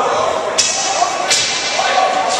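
Two sharp slapping sounds, one about half a second in and a crisper one a little past the middle, over a steady hubbub of voices in a large hall.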